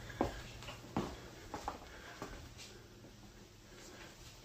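Quiet room tone with a few faint, short knocks, four of them in the first two seconds or so, the first two the loudest.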